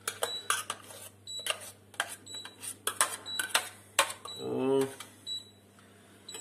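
Metal spoon scraping and knocking against a small stainless-steel saucepan as thick cooked oatmeal is scraped out into a bowl, in a run of irregular sharp clicks. A brief voiced sound about halfway through.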